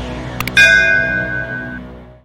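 Two quick clicks, then a single bright bell chime that rings out and fades: a notification-bell sound effect for clicking the bell button, over background music that is fading out.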